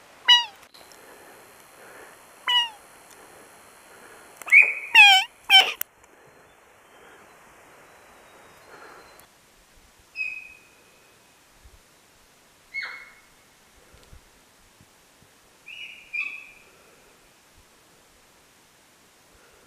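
A series of short, high, pitched animal calls: single calls near the start and about two and a half seconds in, a fast cluster of four around five seconds in, then three fainter calls spaced a few seconds apart, with a thin steady high whine behind the first part.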